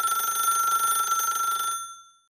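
A telephone bell ringing once: a single ring of nearly two seconds, a bright metallic tone over a buzzing rattle, dying away near the end.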